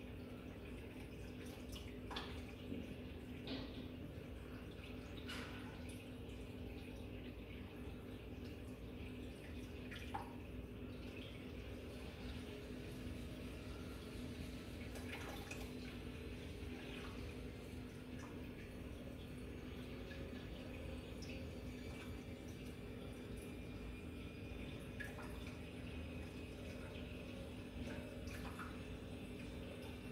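Reef aquarium running: a faint, steady low hum from its equipment, with scattered drips and small splashes of water.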